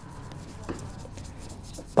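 Fine wet sandpaper (1200 grit) rubbed by hand over a helmet's epoxy-primed shell wet with soapy water: a soft, even scrubbing. This is the second wet-sanding of the primer, to make the surface smooth before the white base coat.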